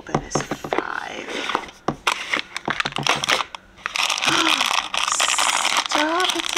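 Irregular clicks and rustles of a cardboard advent-calendar drawer and its contents being handled, then about two seconds of steady crinkling from a clear plastic bag of metal ornament hooks being handled.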